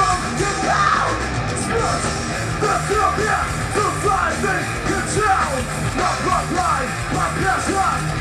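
Live thrash metal band playing at full volume: distorted electric guitar, bass guitar and drums running continuously.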